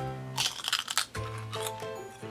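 Background music with held, steady notes, and crunching of potato chips being bitten and chewed, mostly in the first second.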